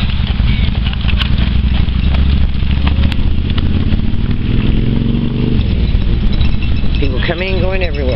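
Wind buffeting the microphone as a steady low rumble, with a faint rising hum in the middle. A person's voice calls out briefly near the end.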